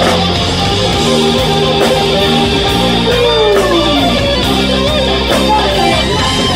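Rock band playing live, an electric guitar lead over bass and drums, with a long downward slide in the guitar about three seconds in.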